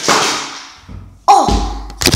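Phone being handled and swung about, with rubbing and knocks on the microphone. Just past halfway comes a sudden loud thump with a short falling cry.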